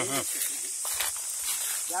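Steady high-pitched insect buzzing of the kind cicadas make in forest, with a few footsteps crunching through dry leaf litter.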